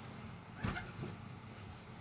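A person shifting in a seat in front of the microphone: two brief soft bumps and rustles, a louder one about half a second in and a smaller one about a second in, over a steady low room hum.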